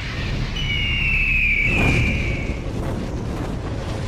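Title-sequence sound design: a deep rumbling boom, over which a bird-of-prey screech sound effect gives one long, slightly falling cry lasting about two seconds, starting about half a second in.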